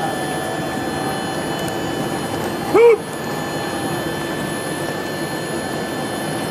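A single short shout from a spectator about three seconds in, its pitch rising and falling, over a steady rushing outdoor noise.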